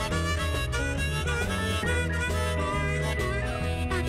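Harmonica solo played from a neck rack during an instrumental break, with bending, wavering notes over a live band of electric guitar, upright bass, keyboards and drums keeping a steady beat.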